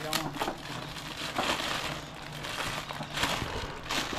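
A clear plastic bag crinkling as a hand rummages inside a biscuit tin to pull out crackers. The rustle comes in a few louder spells.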